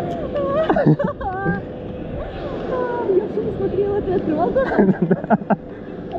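Indistinct voices talking and exclaiming in short bursts over a steady rushing background noise.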